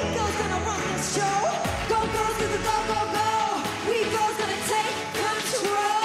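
Upbeat pop song performed live by a girl group: vocals over a full band backing track.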